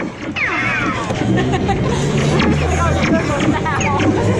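Dark-ride sound effects and soundtrack of Buzz Lightyear's Space Ranger Spin: electronic laser-zap chirps falling in pitch, the clearest in the first second, over music and a babble of voices.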